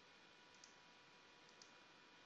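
Near silence with two faint computer mouse clicks, about half a second and a second and a half in.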